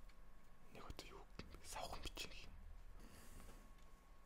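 Soft whispering close to the microphone, in a few short breathy phrases, with a couple of faint clicks about a second in.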